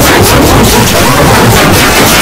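Very loud, heavily distorted and clipped audio: a dense, unbroken wall of noise made by pushing a logo soundtrack through editing effects.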